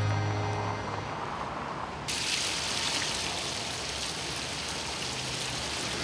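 Background music fading out in the first second, then, suddenly about two seconds in, the steady splashing of water falling from a tiered fountain.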